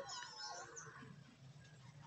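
Near silence with faint, distant bird calls in the first second.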